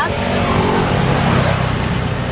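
A motor vehicle passing on the street, its engine and road noise making a steady rumble that is strongest in the middle.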